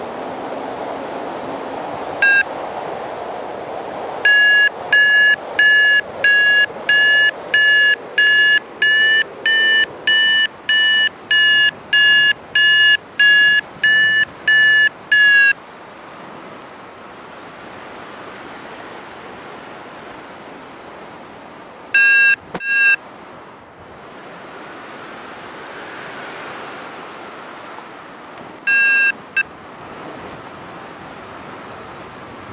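Paragliding variometer beeping in a fast, even run of short high tones, about two a second, the sound it makes to signal climbing in rising air; a couple of shorter beep bursts follow later. Steady wind rushes on the microphone throughout.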